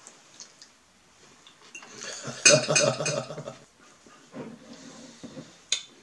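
A metal fork scraping and clinking against a ceramic plate, loudest for about a second in the middle. Near the end comes one sharp clink as the fork is set down on the plate.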